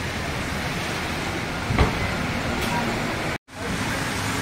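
Rain and city street traffic: an even hiss over a low rumble of passing vehicles, with one sharp knock about two seconds in. The sound drops out completely for a moment shortly before the end.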